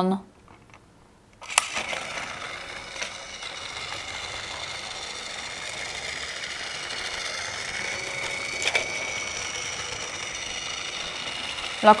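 Battery-powered Fisher-Price TrackMaster Diesel toy locomotive starting with a click about a second and a half in, then its small electric motor and gearbox whirring steadily as it runs along the plastic track. There are a couple of single clicks along the way.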